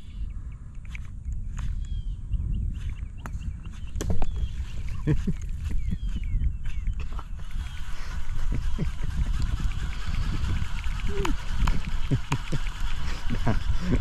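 Wind buffeting an outdoor camera microphone as a steady low rumble, with scattered clicks and a single sharp smack about four seconds in. Birds chirp faintly in the first half.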